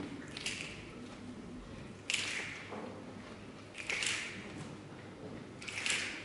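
Many people in an audience clicking their fingers together in time, four snaps under two seconds apart, each a short smeared crackle because the crowd is not quite together. They keep a slow beat as the opening of a song, before the instruments come in.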